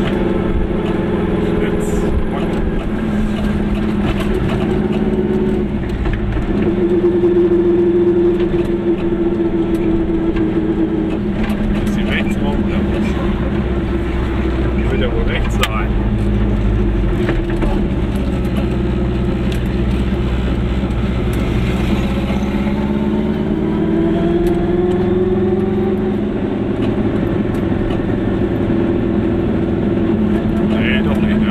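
Car engine and tyre noise heard from inside a moving car's cabin, the engine note rising and falling with speed and gear changes.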